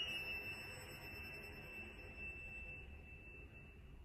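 Solo cello sustaining a very soft, high, thin note that fades away about three seconds in, leaving the room's low hum.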